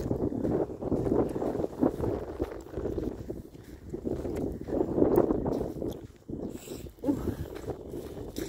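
Wind buffeting a phone's microphone outdoors: an uneven, rumbling noise that rises and falls, swelling about five seconds in.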